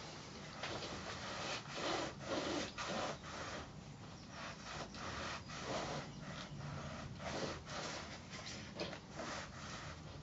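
Small hand-held craft iron sliding back and forth over a pieced cotton quilt block on a padded pressing mat, with fabric being smoothed by hand: a series of soft, faint swishing rubs, about one or two a second.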